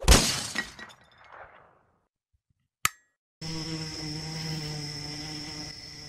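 A glass-shattering crash that rings out and fades over about a second and a half. After a short silence and a single click, a steady buzzing hum with a thin high whine sets in.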